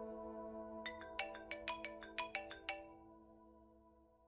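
A mobile phone ringtone: a quick run of about a dozen short chime-like notes, over a held music chord that fades away.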